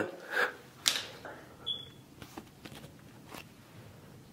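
A few faint, scattered clicks and taps of a key being handled in the hands, in a quiet room; no engine starts.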